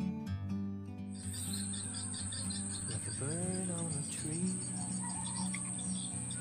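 Swamp ambience: insects keep up a steady high-pitched drone, with a few bird calls rising and falling in the middle. Guitar music plays at the start and stops after about a second.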